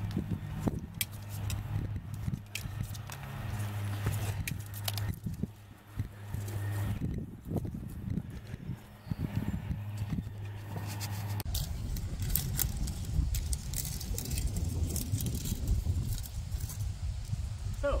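Aluminium-carbon arrows being pulled from a foam archery target and rattling together in the hand, short clicks and clatters over a steady low hum. After a cut partway through, gusty wind rumbles on the microphone.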